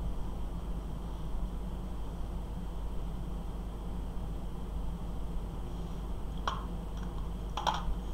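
Steady low background hum, with two faint clicks near the end from a small screwdriver and the plastic model part it is screwing together.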